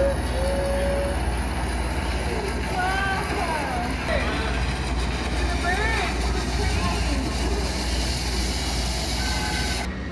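Steady low rumble of a busy indoor exhibit hall, with young children's voices calling out briefly about three and six seconds in.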